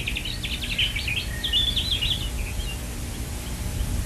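Birds chirping: a rapid trill followed by quick warbling chirps, dying away a little past halfway, over a steady low rumble.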